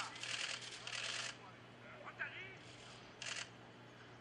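Football training drill: players' brief shouts and calls, with a few short sharp sounds of footballs being struck, over a steady low hum.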